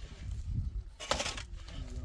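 A brief scraping clatter about a second in, as wooden pallet slats are handled, over a low wind rumble; a man's voice starts near the end.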